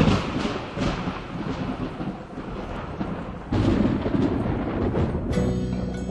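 Rumbling thunder mixed with music with deep drum rolls. The thunder rises again about three and a half seconds in, and held instrument notes come in near the end.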